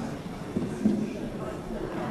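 Indistinct murmur of many people talking at once while moving about a large chamber, with a couple of soft knocks about half a second and a second in.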